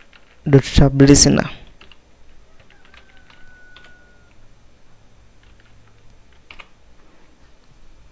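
Faint, scattered keystrokes on a computer keyboard as code is typed, following a short spoken phrase near the start.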